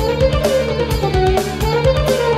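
French horn playing a fast melodic line over a heavy rock backing track with electric guitar and a steady drum beat.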